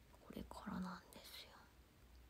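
A young woman whispering softly under her breath for about a second, beginning shortly after the start.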